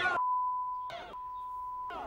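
Broadcast censor bleep: a steady, single-pitched beep tone laid over the crowd audio of news footage, cut once just before the middle by a brief snatch of shouting voices.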